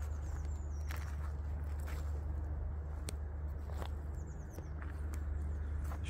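Footsteps on frozen grass, soft crunches about once a second, over a steady low rumble. A couple of faint high chirps sound in the background.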